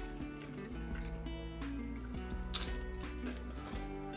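Soft background music with steady held notes. Over it, a crisp crunch about two and a half seconds in, and a smaller one near the end, as the crunchy air-fried pastry of a money bag dumpling is bitten.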